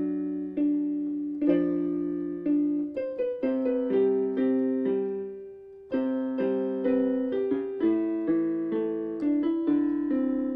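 Electronic keyboard played with a piano sound: chords struck and held, one chord left to die away for a couple of seconds around the middle before new chords come in.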